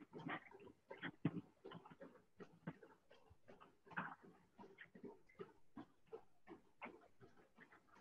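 Faint, irregular puffs of heavy breathing and footfalls from runners jogging on TrueForm Trainer curved manual treadmills, heard thinly through a video call.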